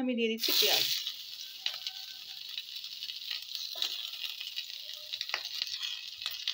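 Sliced onions and green chillies going into hot mustard oil in a kadai: a sudden loud sizzle about half a second in. It settles to a steady, quieter sizzle with scattered small crackles.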